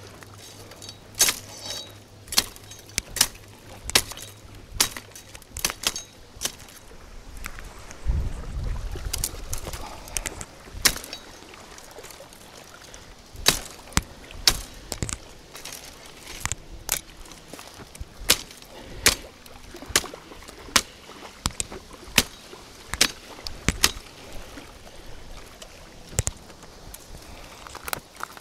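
Machete chopping through brush and small branches: a long series of sharp, irregular strikes, about one or two a second.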